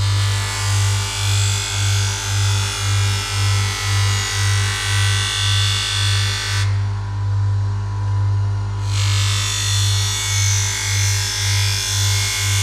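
Electric bench grinder's motor humming with a pulsing beat while a long butcher's knife blade is drawn across the spinning grinding wheel, giving a hissing grind. The grinding stops for about two seconds past the middle as the blade is lifted off, then starts again.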